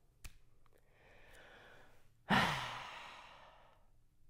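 A man sighs: a faint breath in, then a loud breathy exhale a little past halfway that fades away over about a second and a half. A small click sounds just after the start.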